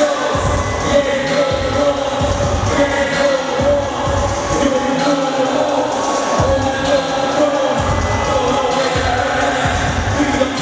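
A rapper performing live into a handheld microphone over an amplified hip-hop backing track with heavy bass.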